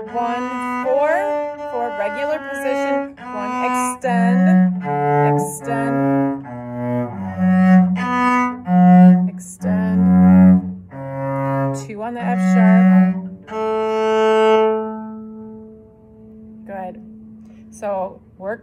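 Cello played slowly, a low melody of separate bowed notes one after another, some reached in a stretched forward-extension hand position, ending on a longer held note that dies away about three-quarters of the way through.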